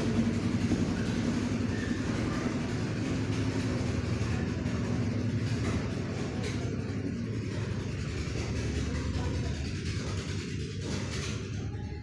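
Sev strands of besan dough sizzling steadily in hot oil as the dough is rubbed by hand through a perforated iron tava, with a few faint clicks later on.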